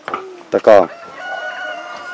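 A bird calling in the background: one long steady pitched note held through the second half, after a brief voice.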